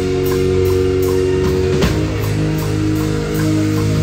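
A live band playing an instrumental passage: a drum kit keeps a steady beat with regular cymbal strokes about two to three a second under sustained chords, which change a little before the two-second mark.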